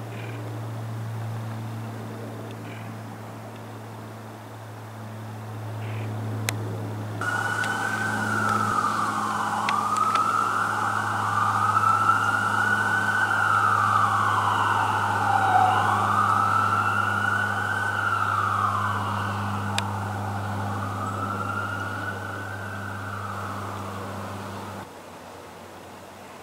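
A siren wails in slow rising-and-falling sweeps, starting about seven seconds in and cutting off near the end. It is the loudest sound, heard over the steady low drone of the AC-130J gunship's four turboprop engines.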